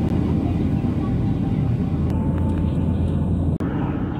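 Steady low rumble of an airliner cabin in flight: engine and airflow noise heard from inside the plane, with a brief dip near the end.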